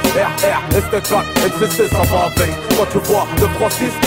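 Hip hop track: a man rapping over a beat with regular drum hits and a low bass.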